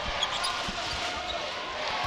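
Basketball being dribbled on a hardwood court, a few separate bounces over steady arena crowd noise.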